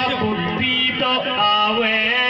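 A man singing a Rajasthani Meena dhancha folk song into a microphone, holding long, wavering notes.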